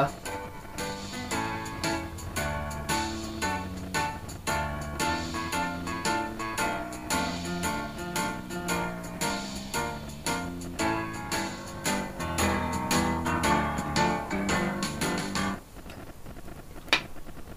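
Recorded music played off reel-to-reel tape through a loose replacement tape head from a 1990s hi-fi, held by hand against the moving tape. The highs are a lot crisper than with the original head, but the playback level is weak. The music drops away just before the end.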